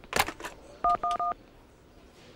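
Corded desk telephone keypad dialling: a couple of button clicks, then three short touch-tone beeps of the same key in quick succession, the tone pair of the '1' key.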